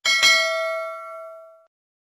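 A single bell-like 'ding' sound effect: one struck chime that rings and fades out over about a second and a half, just after a quick click.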